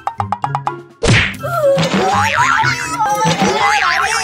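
Comedy background music with quick, even ticking over a bass line. About a second in, a loud cartoon sound effect hits, then wavering, wobbling cartoon tones follow.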